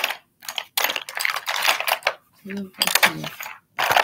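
Close-up handling noise: packaging and small items rustling, tapping and clinking right at the microphone in a string of short bursts.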